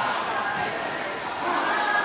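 Indistinct voices of spectators and coaches talking and calling out, echoing in a large hall, with a few dull thuds.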